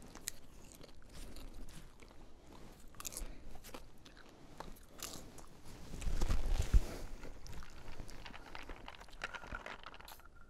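A person crunching and chewing a crunchy snack close to the microphone, in many small crackles. About six to seven seconds in there is a louder stretch of rustling with a sharp knock.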